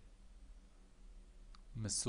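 A pause in a man's voice-over: faint room tone with a steady low hum and a single faint click about one and a half seconds in, then the voice resumes near the end.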